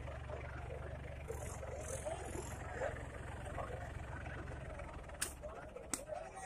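John Deere 5310 diesel tractor engine running steadily with a turbocharger fault, its sound dying away about five seconds in. Crowd voices call out over it.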